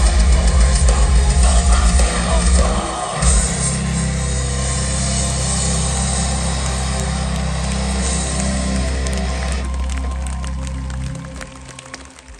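Live industrial metal band finishing a song. The full band plays loud, with heavy drums and bass, for about three seconds, then a held low chord rings on and fades away near the end.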